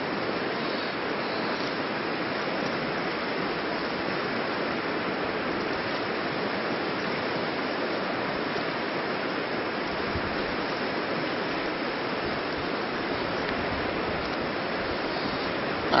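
Steady rushing of flowing river water, an even hiss that holds at one level with no breaks.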